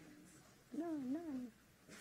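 A short wordless vocal sound from a person's voice, under a second long, its pitch rising and falling twice.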